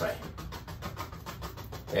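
A paintbrush loaded with black acrylic gesso tapping repeatedly against a stretched canvas: a rapid run of light taps as tree shapes are stippled in.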